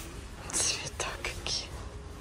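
A woman whispering under her breath: a few short hissy syllables about half a second in and again around a second and a half, with a light click between them.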